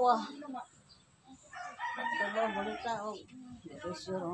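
A rooster crowing once, a single drawn-out wavering call starting about a second and a half in.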